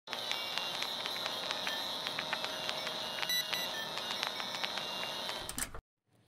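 Old-film projector sound effect: a steady whirring hiss with a thin high whine and scattered crackles and clicks. It cuts off suddenly near the end.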